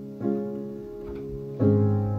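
Slow background piano music: held chords, with a new chord struck about a quarter second in and a deeper, louder one near the end.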